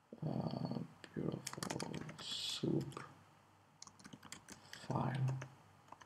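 Computer keyboard typing: scattered key clicks as a line of code is typed and Enter is pressed, with short stretches of low, indistinct speech in between.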